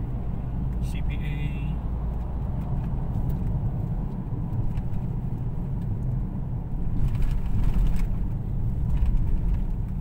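Road noise inside a moving car's cabin: a steady low rumble of engine and tyres. It grows louder and rougher for a couple of seconds near the end.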